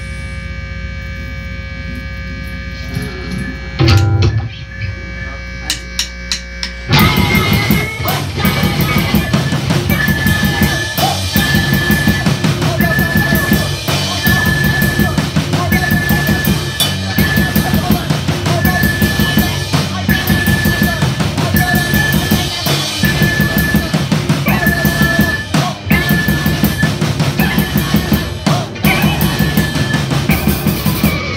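Live rock band starting a song: a held low note with one loud hit about four seconds in, then the full band comes in about seven seconds in with drum kit, electric guitar and keyboard. A high note repeats in a steady pulse over the driving beat.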